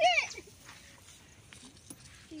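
A drawn-out spoken count trails off in the first half-second, then faint outdoor background.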